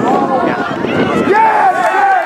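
Many voices shouting and cheering at once from sideline spectators and players, overlapping with no single clear voice.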